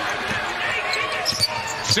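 A basketball bouncing repeatedly on a hardwood court as a player dribbles at speed, over steady arena crowd noise.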